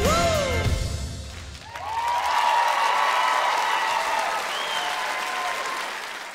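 A live band's last chord and a final sung note, the voice gliding up and falling away, die out in the first second and a half; then a studio audience breaks into loud applause with cheering about two seconds in.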